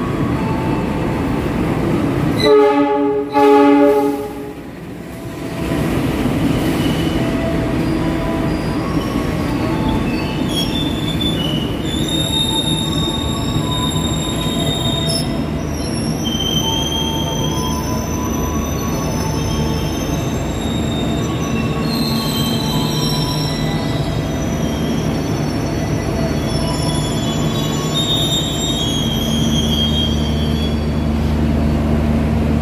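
A diesel-electric passenger train arriving: the locomotive sounds its horn in two short loud blasts about three seconds in, then the train rolls in with a steady rumble and high-pitched wheel and brake squealing as it slows to a stop.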